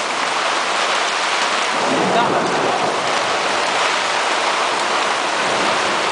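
Heavy rain falling steadily on a moored sailboat's cockpit cover and deck.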